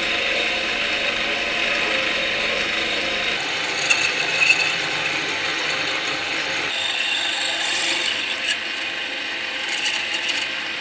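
Metal lathe drilling a deep hole into a stainless steel bar with a long twist drill: steady cutting noise from the drill and spinning stock, with the scrape of chips coming off. A few sharp clicks come about four seconds in and again around eight seconds.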